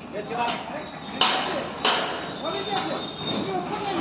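Two sharp metal clanks about two-thirds of a second apart, steel striking steel on a tower crane's lattice mast and climbing frame, each ringing briefly, followed by a faint high metallic ring.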